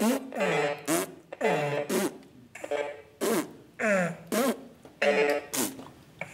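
A child making short, silly vocal mouth noises into a plastic toy microphone, about two a second, each a quick slide in pitch.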